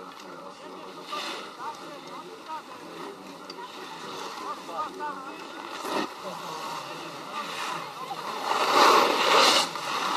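Faint distant voices, then near the end a rushing scrape lasting about a second, the sound of a snowboard sliding over packed snow.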